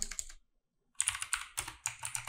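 Typing on a computer keyboard: a few quick keystrokes, a pause of about half a second, then another run of keystrokes.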